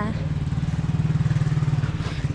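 A motor engine running steadily at idle, a low hum with a fast, even pulse.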